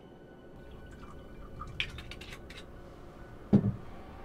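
Several light clinks of glassware, then a single loud thud a little before the end.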